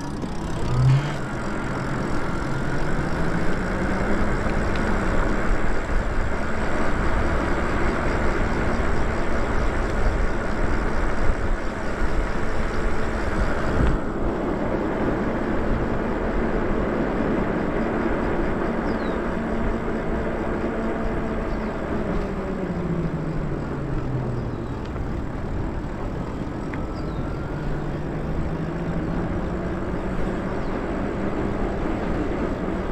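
Whine of an e-bike's electric motor, rising in pitch as the bike picks up speed, holding steady, then dropping as it slows about two-thirds through and rising again near the end. Wind noise and tyre noise on pavement run underneath.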